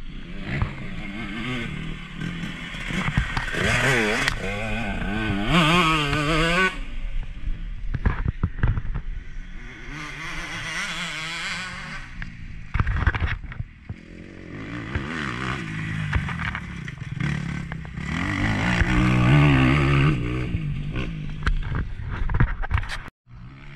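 Husqvarna 125 motocross bike's engine revving up and down through the gears while riding a dirt track. It pulls hard about four to six seconds in and again near the end, and eases off around the middle.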